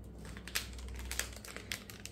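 Clear plastic packaging giving a few short crinkles and clicks as hands grip and lift it.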